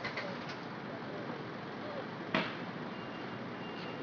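Street ambience: a steady background din with faint voices in it, and one sharp knock a little over two seconds in.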